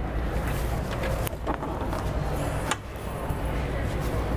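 Steady background noise of a large exhibition hall: a low rumble with indistinct voices, and a couple of brief knocks.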